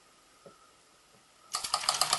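Near silence, then about one and a half seconds in a Fleischmann 1213 model steam engine starts running with the line shaft and toy workshop models it drives, a sudden fast clatter of rapid ticks.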